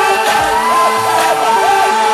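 Loud electronic dance music from a live DJ set over a club sound system. A synth line of short notes that rise and fall runs over a held chord.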